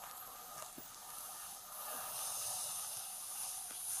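A person blowing a long breath into the mouthpiece of an evidential breath-testing machine: a steady hiss of air that swells about a second and a half in and eases near the end.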